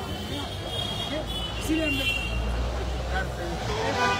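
Men's voices talking in an outdoor crowd over a steady low rumble that swells in the second half.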